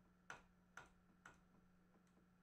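Faint metronome clicks, about two a second, counting in the tempo for a loop.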